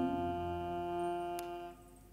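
Hurdy-gurdy holding a sustained drone chord as the final note, cut off abruptly about three quarters of the way through. A single light click sounds shortly before the cut-off.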